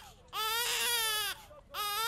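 A baby crying in long wails: one drawn-out cry, a short breath-like pause, then another cry beginning near the end.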